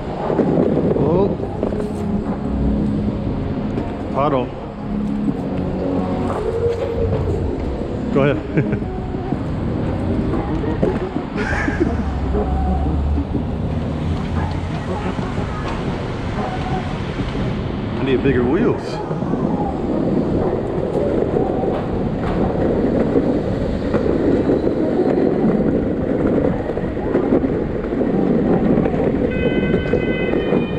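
Continuous road and wind noise from a camera moving along a rough city street, with scattered knocks and rattles from bumps in the pavement.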